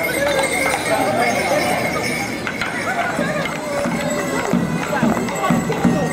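Crowd of onlookers chatting, with scattered sharp clinks and clicks among the voices.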